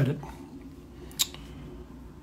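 A single short, sharp click a little past a second in, over low room hum.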